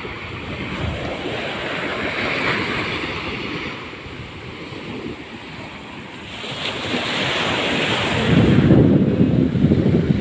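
Small waves washing up on a sandy beach, the surf rising and easing, with wind buffeting the microphone. The wind rumble grows louder and heavier over the last couple of seconds.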